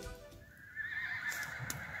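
A horse whinnying: one long, quavering call that begins under a second in, as music fades out.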